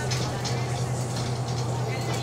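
Steady low drone of a bus engine heard from inside the passenger saloon, with people talking in the background.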